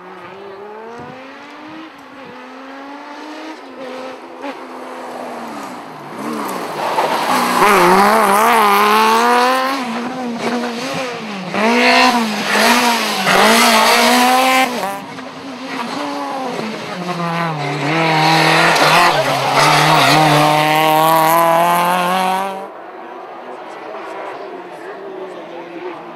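Rally car engines at high revs, pitch climbing through the gears and dropping sharply on downshifts, with the revs swinging up and down in quick waves through corners. The sound is loudest in the second half and cuts off suddenly near the end.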